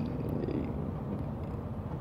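Steady low rumbling background noise with no clear events, a gap in spoken talk.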